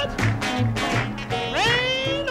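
A gospel song performed live: a woman sings over her own electric guitar and a band, with a pulsing bass line underneath. About one and a half seconds in, the voice swoops upward into a long held note.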